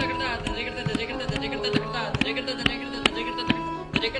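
Tabla played in a solo, with sharp uneven strokes several times a second over a steady, sustained melodic accompaniment.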